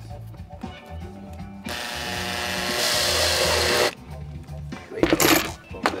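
Makita cordless drill/driver running for about two seconds, driving a screw to fasten a circuit board into its case, its whine getting louder until it cuts off abruptly. Background music plays throughout.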